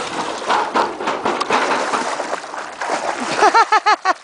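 Water splashing and sloshing. Near the end comes a quick run of short high-pitched vocal sounds.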